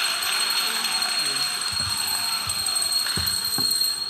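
A large crowd in a hall cheering and clapping, a dense steady noise with a thin high-pitched whine over it; the noise drops away sharply right at the end.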